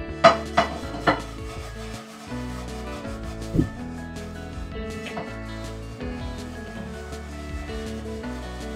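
A rag scrubbing coarse kosher salt and water around the inside of a rusty cast iron skillet, the salt grating against the iron, over steady background music.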